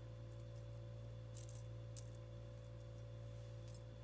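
Small metal key charms clinking lightly a few times as fingers sift through a handful of them in the palm, over a steady low hum.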